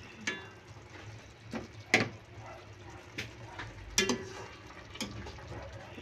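A serving utensil knocking and scraping against a pan and a ceramic bowl while ladling soupy fish stew: about six short clinks, the loudest about two and four seconds in.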